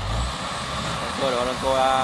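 Combine harvester engine running steadily, with a brief low rumble at the start; a man shouts a call over it in the second half.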